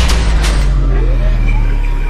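Cinematic logo-intro sound effect: a deep, sustained booming rumble with a crashing hit of shattering debris about half a second in.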